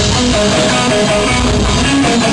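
Live rock band playing loud, led by an electric guitar riff of repeating picked notes.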